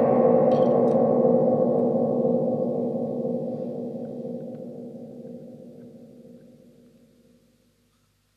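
The band's final chord ringing out after the drums and bass stop, fading away steadily over about seven seconds.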